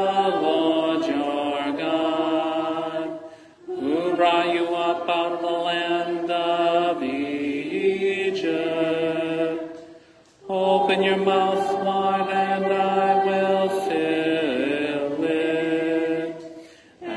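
A congregation chanting the introit to a psalm tone, in phrases held mostly on one reciting note, with short pauses for breath about three and ten seconds in.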